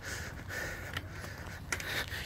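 A man's breathing through nose and mouth while jogging, over a steady low rumble.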